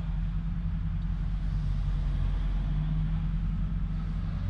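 Pickup truck engine idling steadily, a low even rumble heard from inside the cab.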